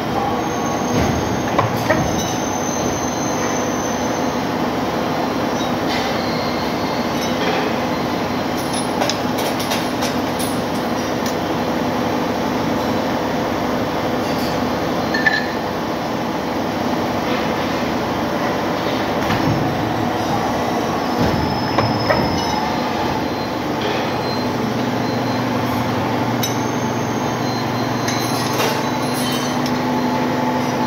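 Hydraulic press power unit running steadily with a low hum, as steel sprocket blanks are handled in the die, with a few sharp metal clinks.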